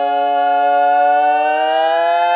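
Women's barbershop quartet singing a cappella, holding one loud sustained chord without a break, the pitches sliding slowly upward together as it swells.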